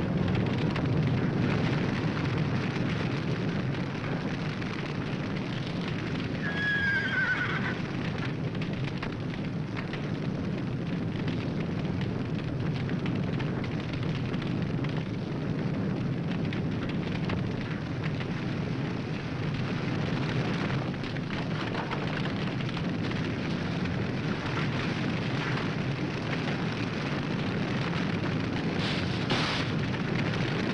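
Horse whinnying over a steady low rumbling noise, with one clear shrill whinny about seven seconds in and a fainter one later.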